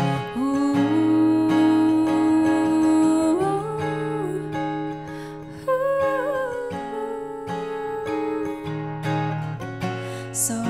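A woman singing long held notes while accompanying herself on a strummed acoustic guitar, her voice sliding up to a higher note about three and a half seconds in.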